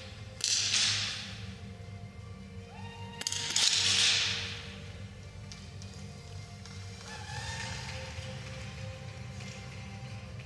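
Two shots from small-bore .22 rimfire target rifles, about three seconds apart, each a sudden crack that rings on in the hall for about a second. They sound over steady background music.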